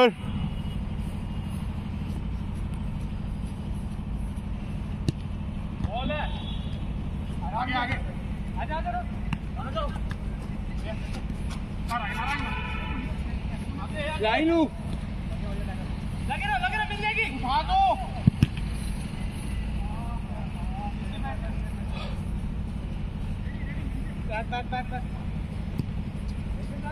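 Footballers' shouts and calls during play, scattered short bursts of voices over a steady low rumble, with a couple of sharp knocks.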